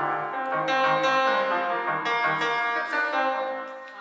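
Fazioli grand piano played in a busy passage of many notes over repeated low bass notes; the sound fades away near the end.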